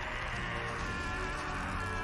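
A steady, high buzzing drone of several held tones that waver slightly, from the anime episode's sound track.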